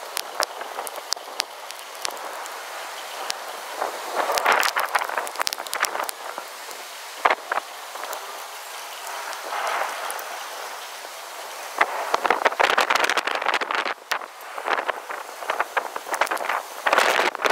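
Thunderstorm rain and gusting wind, a noisy rush that swells and eases in waves, louder a few times, with scattered sharp clicks. No rumble of thunder.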